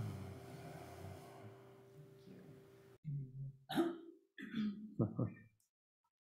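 Acoustic guitar's last chord ringing and fading, then cut off suddenly about three seconds in. It is followed by four or five short, wordless vocal sounds from the player.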